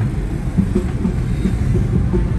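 Car driving in traffic, heard from inside the cabin: a loud, steady low rumble of engine and road noise with irregular small knocks.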